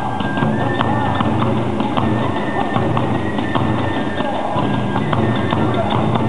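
Kagura hayashi accompaniment playing a fast dance piece: a taiko drum and small cymbals beating a rapid, driving rhythm under a long held flute line.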